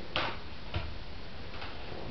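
CD cases being handled: a brief scrape just after the start, then a couple of faint light clicks.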